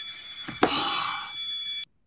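A bell, like an electric school bell, ringing steadily on a set of high tones and cutting off suddenly near the end, with a brief burst of noise about half a second in.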